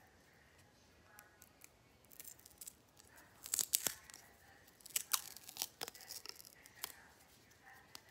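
A plastic seal being picked at and torn off the top of a small lip balm tube: a run of short crackling rips and clicks, loudest about three and a half seconds in and again around five seconds.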